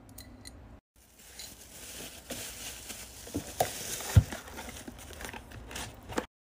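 Hands packing a small order: packaging crinkling and rustling, with light knocks and one louder low thump about four seconds in.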